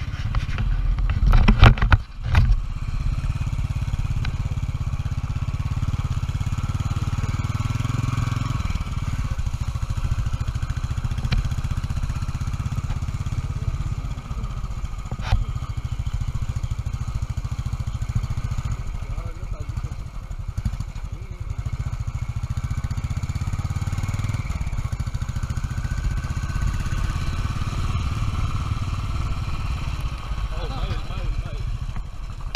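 Royal Enfield Electra 350 twin-spark single-cylinder engine running steadily as the bike is ridden along a rough dirt trail, with a cluster of loud knocks about two seconds in.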